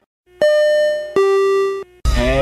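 A two-note electronic chime, ding-dong: a higher note about half a second in, then a lower note, each held for well over half a second before it cuts off.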